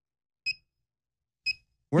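Alarm of a desktop carbon dioxide meter (Carbon Dioxide/Temp./RH model 7722) beeping twice, short high beeps about a second apart. It is set off by a CO2 reading above 5,000 ppm.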